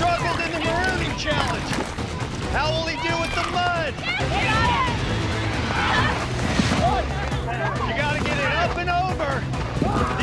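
Several people yelling and shouting over background music with a steady low pulse.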